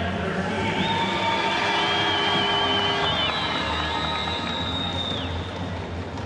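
Arena music over the PA with steady crowd noise in a large indoor pool hall; a high, wavering held note runs from about a second in until about five seconds in.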